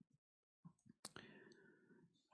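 Near silence with a few faint clicks, one slightly sharper about a second in.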